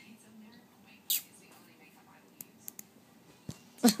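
Mostly quiet, with a short breathy, whisper-like burst about a second in and a few faint clicks; a person starts laughing right at the end.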